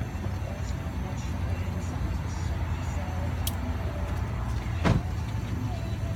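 Steady low rumble of an idling car engine, with a sharp click about five seconds in.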